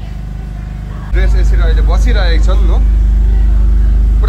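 Voices over a steady low rumble of a vehicle running, which becomes abruptly much louder and deeper about a second in.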